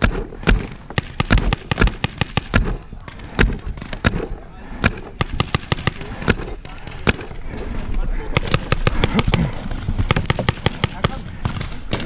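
Paintball markers firing during a game: dozens of sharp pops at irregular intervals, some coming in quick runs of several shots.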